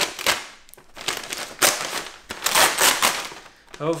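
Scissors snipping into a plastic shipping mailer with a couple of sharp snips, then the thin plastic crinkling and rustling in three long stretches as the bag is cut and pulled open.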